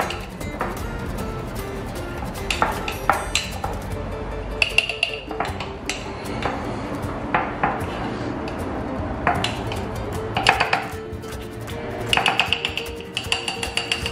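Metal spoon clinking and scraping against a ceramic mug as it stirs thick cake batter, in irregular short clinks, over background music.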